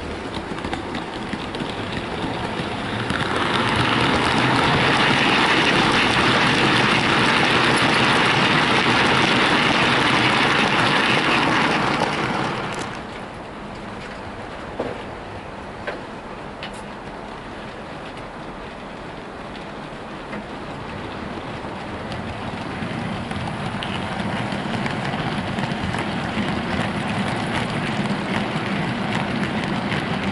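Model freight train of Hornby HAA hopper wagons running on the layout track: a steady rolling hiss of wheels on rails. It swells about three seconds in and drops off sharply around thirteen seconds, then builds again slowly as the wagons come past near the end, with a couple of faint clicks in between.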